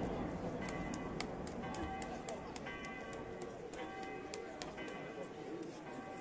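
Rumble of a large daytime firework bomb dying away. After it comes a faint voice in short pitched phrases, with a scattering of sharp clicks.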